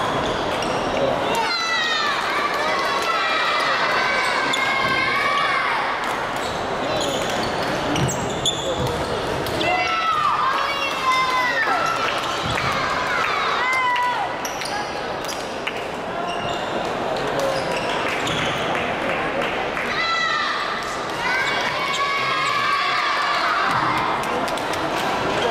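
Busy badminton-hall din from several matches at once: sneakers squeaking on the wooden courts and scattered voices, echoing in the large hall.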